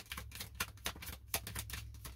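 A tarot deck being shuffled overhand by hand: a quick, irregular run of papery clicks and slaps, about five a second, as cards drop from one hand onto the other.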